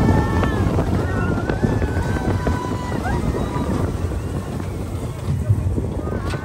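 Slinky Dog Dash roller coaster train running along its track at speed: wind buffeting the microphone over a steady low rumble from the train, easing somewhat in the second half as it runs toward the brakes.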